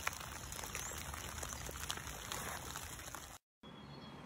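Faint steady background hiss with a few small clicks, cutting out completely for a moment about three and a half seconds in, then returning quieter.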